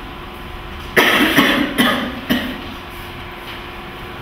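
A woman coughing, a short run of about four coughs starting about a second in.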